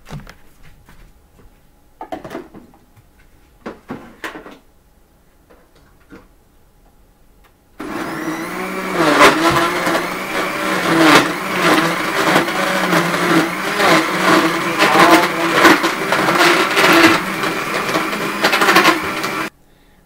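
Countertop blender switched on about eight seconds in, its motor running for about twelve seconds as it crushes ice cubes in a banana, peanut butter and almond milk smoothie, then cutting off suddenly just before the end. Before it starts, a few knocks and clicks as the jar is set onto its base.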